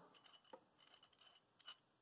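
Near silence, with two faint metal clicks, about half a second in and near the end, from a steel screw pin shackle and its pin being handled.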